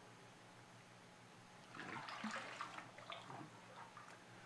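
Water sloshing in a baptismal tank as two people shift their stance in it, starting about two seconds in and lasting a second or two, over a faint steady room hum.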